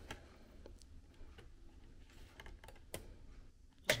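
Faint, scattered plastic clicks and taps as a Blu-ray disc is handled and pressed onto the open tray of a slim Verbatim external optical drive.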